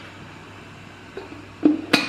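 Lid of a glass sauce jar being twisted open by hand: a faint knock, then two sharp clicks near the end, the second the louder.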